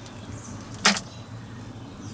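A single short, sharp splash-like noise a little under a second in as the high-water alarm sensor is set down into shallow bilge water, over a faint low hum.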